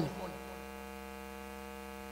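Steady electrical mains hum, a buzz made of many evenly spaced tones, with the tail of a man's word fading out at the very start.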